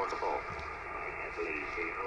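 Icom IC-7300 HF transceiver receiving on the 17 m band: a steady hiss of band noise from its speaker, with faint, broken snatches of a distant voice.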